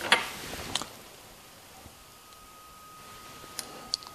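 A few light clicks of a brass rifle case being handled: drawn from a plastic loading block and closed in the steel jaws of a dial caliper to measure its length. Two clicks in the first second and two more shortly before the end, with quiet room tone between.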